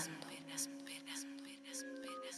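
Quiet background music: several held notes under a light, quick high ticking rhythm of about four or five a second.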